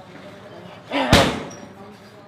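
A single hard punch or kick landing on a heavy bag about a second in, with a short grunt from the fighter as it lands.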